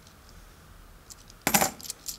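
Kennedy half-dollar coins clinking together: a quick cluster of sharp metallic clinks about one and a half seconds in, after a quiet start.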